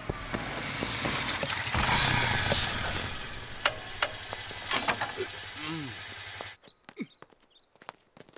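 Motorcycles riding up and coming to a stop, their engines running with a steady low hum that cuts off abruptly about six and a half seconds in.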